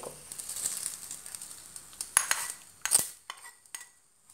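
Hot tempering oil poured from a small pan into a steel bowl of okra curry, sizzling faintly as it hits the curry. Then a few sharp metal clinks as the pan knocks against the bowl's rim, the loudest about three seconds in.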